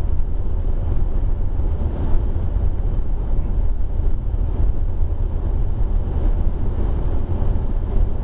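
Steady low rumble of a car driving at low speed on a wet, slushy road: engine and tyre noise with no changes.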